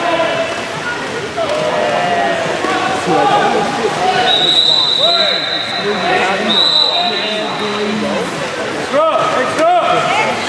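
Spectators talking and shouting over one another during a water polo match. About four seconds in, a referee's whistle sounds one steady high blast lasting over a second, followed shortly by a second, shorter blast.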